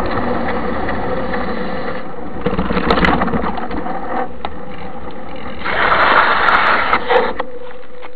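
Steady wind and rolling noise picked up by a camera mounted on a moving mountain bike, with scattered rattling clicks from the bike. The noise swells louder for a moment about two and a half seconds in, and again for over a second from about six seconds in.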